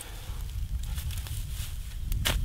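A shovel digging into soil and dry leaf litter, with faint crunching and rustling over a low rumble.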